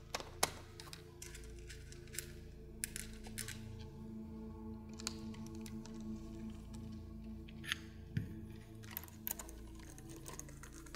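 Soft background music with steady held tones, over a few scattered light clicks and taps as wheels are pushed onto the hubs of an RC touring car chassis.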